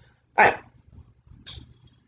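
A dog barking once, a single short bark, followed about a second later by a fainter, sharper short sound.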